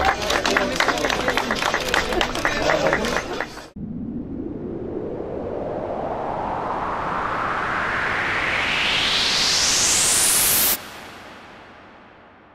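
Crowd voices and clapping that cut off abruptly, followed by a rising whoosh sound effect: a noise sweep climbing steadily in pitch for about seven seconds, then stopping suddenly and fading away.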